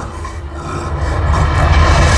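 Deep low rumble from a show's loudspeaker soundtrack, building steadily louder over the two seconds between music cues.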